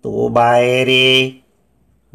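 A man's voice in a drawn-out, sing-song chant, held on a steady pitch and cutting off about a second and a half in.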